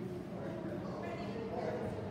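Indistinct voices in a large echoing hall, loudest in the second half, over a steady low hum.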